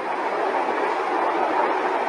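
A steady rushing noise, loud and even throughout.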